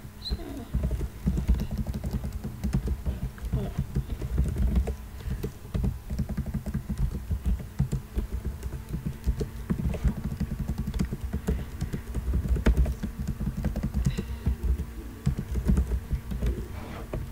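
Typing on a computer keyboard: a steady stream of irregular key clicks with brief pauses, over a faint low steady hum.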